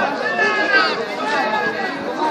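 Several spectators' voices talking and calling out at once, overlapping chatter close to the microphone.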